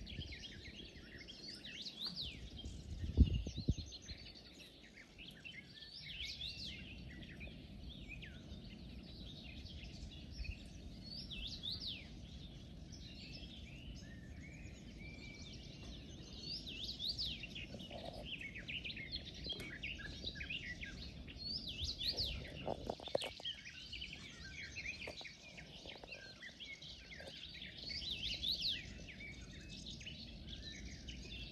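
Several birds singing in a marsh, many short chirping phrases overlapping throughout, over a low steady background rumble. A sharp low thump about three seconds in is the loudest sound, with a few smaller low bumps a little past the middle.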